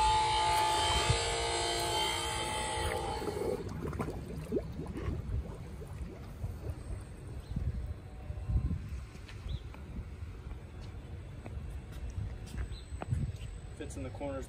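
WaterTech Volt FX-8LI battery-powered pool vacuum running out of the water, a whine of several steady tones that cuts out about three and a half seconds in as the head is submerged. After that there is only a low rumble with a few soft knocks.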